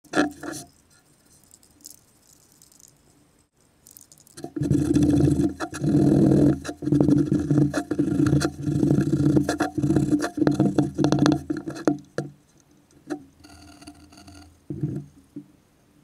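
A cast metal skull belt buckle is rubbed hard with a cloth rag on a wooden workbench, rattling and scraping against the bench in a fast, dense run from about four seconds in until about twelve seconds. A couple of sharp clicks come at the start as the buckle is set down, and a few knocks come near the end.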